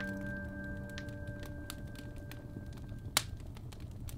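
Piano's final chord ringing out and slowly fading away, with a single sharp click about three seconds in.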